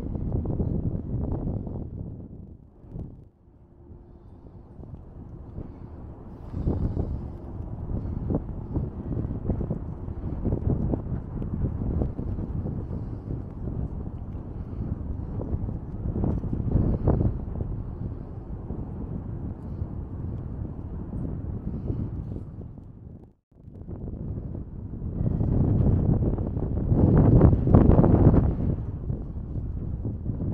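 Wind buffeting the microphone in gusts: a low rumbling noise that rises and falls, strongest near the end. It drops away briefly about three seconds in and cuts out for a moment about twenty-three seconds in.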